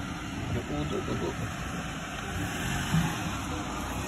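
Faint, indistinct voices over a steady outdoor background noise.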